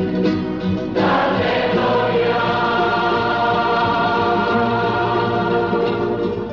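Background music: a choir singing a sacred hymn in long held chords, with a new chord coming in about a second in.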